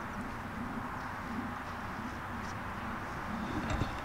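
Steady outdoor background hiss with a faint wavering low hum, and a few soft knocks shortly before the end.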